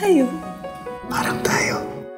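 Soft background music with a woman's short laugh falling in pitch at the start, then breathy laughter about a second in.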